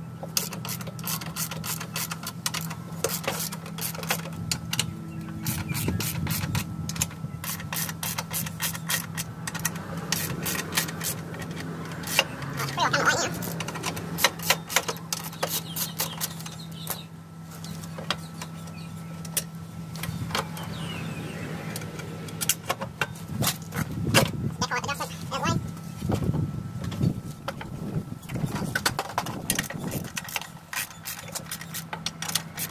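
Hand tools working on a ride-on mower's transaxle mounting: a run of quick metal clicks and clinks, dense for the first several seconds and then scattered, over a steady low hum.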